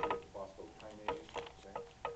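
Faint speech broken up by a series of sharp clicks or taps, about six in two seconds, the strongest right at the start.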